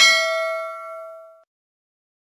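Notification-bell sound effect of a subscribe animation: one bright ding that rings and fades out about a second and a half in.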